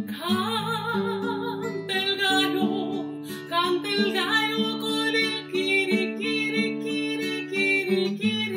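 A woman singing with a wavering vibrato, accompanied by an acoustic guitar. Her voice comes in right at the start over the guitar's plucked notes.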